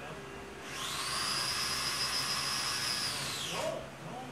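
Small electric slot-car motor run up to a steady high whine for about three seconds, then winding down in pitch as it is let off.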